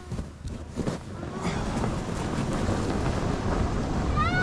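Snow tube setting off down a packed-snow run: a few knocks as it is pushed off, then a rushing noise of the tube sliding over the snow and wind on the microphone, growing steadily louder as it picks up speed.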